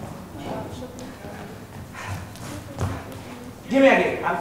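Actors' voices speaking on a theatre stage, with a low thud around the middle and a loud voiced call near the end.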